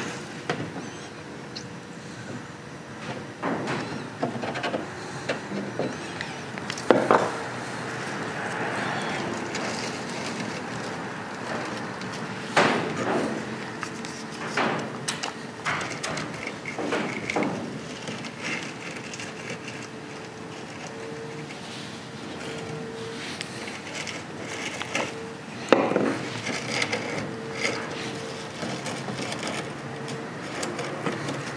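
Hands working moss onto the eaves of a wooden dollhouse: scattered rustles, light knocks and taps against the wood, the strongest about a quarter of the way in, near the middle and near the end. A faint steady hum runs underneath.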